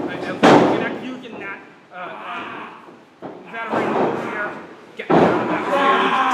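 Wrestlers' bodies hitting the ring mat: a sharp thud about half a second in, with smaller knocks a few seconds later, amid shouting voices.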